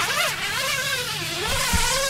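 Wind howling in gusts, a wavering whistle that slides up and down over a steady rushing hiss, with a low rumble coming in near the end.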